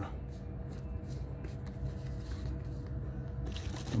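Quiet store room tone with a steady low hum, and faint rustling of comic books being shifted and set down in a wire shopping cart.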